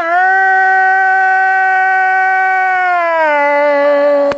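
A man singing one long held note, steady in pitch, then sliding down to a lower note about three seconds in and holding it.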